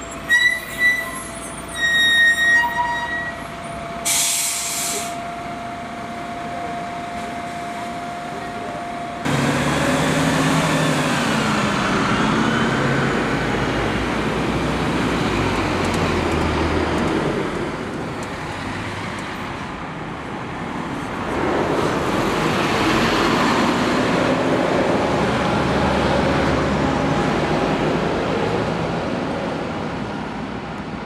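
Bus brakes squealing in several short high-pitched squeals, then a short hiss of compressed air from the brakes. From about nine seconds in, diesel bus engines run and pull away, their pitch rising and falling, fading for a few seconds and then louder again as another bus comes by.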